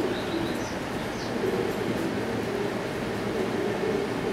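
Domestic pigeons cooing steadily, low and wavering, with a few faint high chirps near the start.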